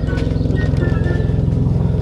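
A motor vehicle's engine idling steadily, a low, even throb with a fast regular pulse.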